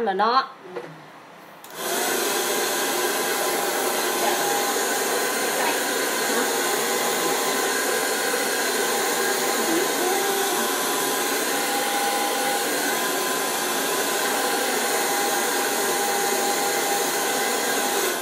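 Handheld hair dryer switched on about two seconds in and running steadily, blowing on short hair, then shutting off near the end.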